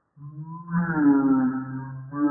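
A male voice making one long, wordless, drawn-out vocal sound at a fairly steady pitch, dipping slightly partway through. It starts just after the beginning.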